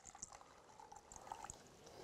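Water being poured from a bottle into a cup, a faint steady trickle.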